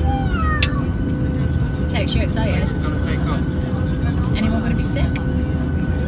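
Airliner cabin noise with the engines running: a steady, deep rumble with a constant whine running through it, heard from inside the cabin before take-off.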